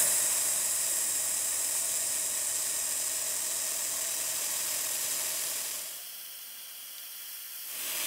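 Handheld fibre laser welder with wire feed welding a butt joint in steel plate: a steady hiss that quietens about six seconds in.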